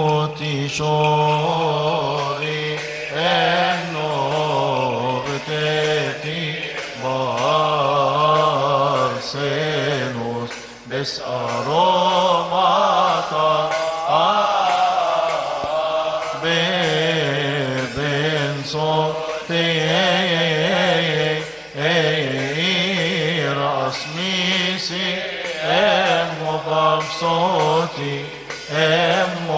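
Male deacons' choir chanting a Coptic Orthodox liturgical hymn: long, melismatic sung lines over a steady low held note, without a break.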